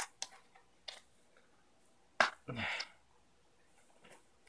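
Plastic latches of a hard waterproof box being worked open and shut, giving a few light clicks and a sharper snap about two seconds in. The latches had been filed down with a Dremel so they now open and close freely.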